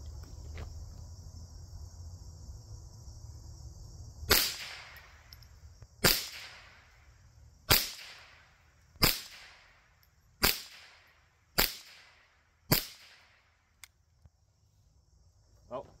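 Seven shots from a Rossi RS22 semi-automatic .22 LR rifle, fired one at a time about a second and a half apart, each a sharp crack with a short echo. Near the end comes a single faint click as the rifle fails to feed the next round.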